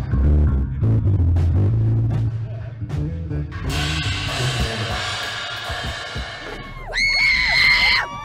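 Live concert sound: loud bass-heavy band music from the stage, then from about four seconds in a crowd of fans screaming, ending in a shrill, sustained high-pitched scream in the last second.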